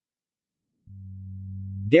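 Silence, then about a second in a steady low buzzy electronic tone that swells slightly and leads straight into the synthetic voice: a text-to-speech artefact.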